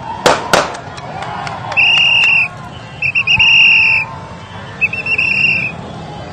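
Three loud, steady whistle blasts, the middle one the longest, over the noise of a street crowd. Two sharp bangs come just before them, near the start.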